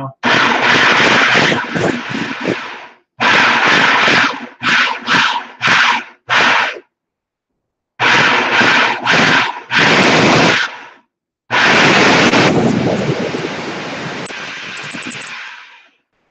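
Black and Decker food processor motor pulsed in a string of short bursts, then run for about four seconds and growing quieter as it goes. Fresh tomatoes, skins and all, are being chopped to a coarse purée rather than juice.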